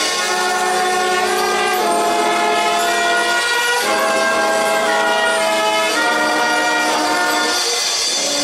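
Brass band of trumpets, trombones and sousaphones playing long, sustained chords, each held about two seconds before moving to the next.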